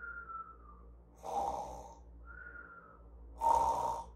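A woman's mock snoring: a short falling whistle alternates with a rough, snorting snore, twice over, about a second apart.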